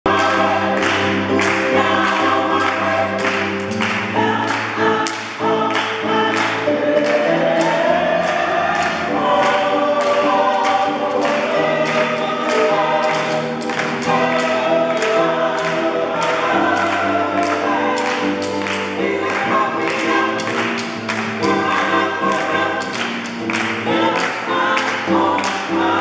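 Gospel choir singing in harmony, with a steady beat of hand claps about twice a second.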